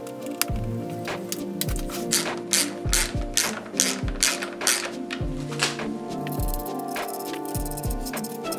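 A hand ratchet clicking in a run of even strokes from about two seconds in, tightening the valve cover nuts on a BMW M54B30 engine. Background music with a steady beat plays throughout.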